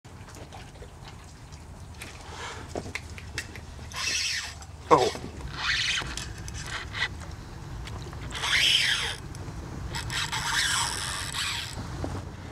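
A fishing reel's drag buzzing in several bursts as a big fish on a hard-bent rod pulls line off in repeated runs.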